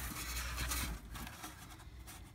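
Cardboard being handled and rubbed against a polystyrene foam block, a dry scraping rustle that is strongest in the first second and then fades.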